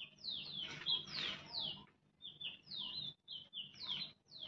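A small bird chirping repeatedly: a quick series of short, high notes, most sliding down in pitch and a few held level.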